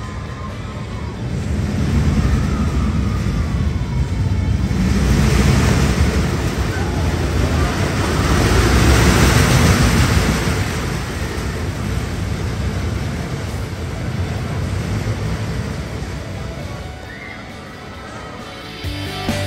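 A roller coaster train rumbling along its steel track, swelling in two waves and loudest about halfway through, then fading away.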